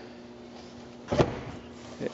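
A single short scuff about a second in, from a hand brushing the carpeted floor mat of a microcar's rear footwell. A faint steady hum lies under it.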